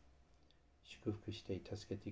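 Only speech: a man's voice praying aloud in Japanese, picking up again about a second in after a short pause.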